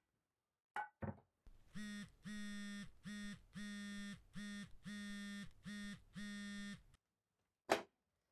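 A mobile phone buzzing on vibrate for an incoming call: a steady-pitched buzz in about eight pulses, long and short by turns, that stops about a second before the end. A couple of light knocks come just before it, and a sharp clack near the end.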